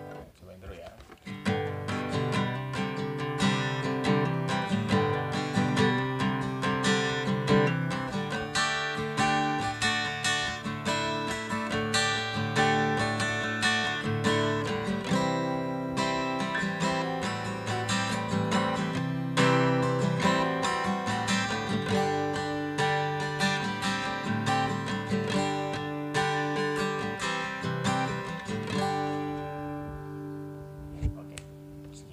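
Steel-string acoustic guitar played continuously, strummed chords mixed with picked single-string melody notes. It starts about a second and a half in and runs almost to the end.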